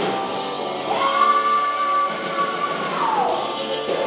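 Live rock band playing, with electric guitars, drum kit and keyboard, resuming at full volume after a brief dip. About a second in a long high note rises in, holds steady, and slides down a little after three seconds.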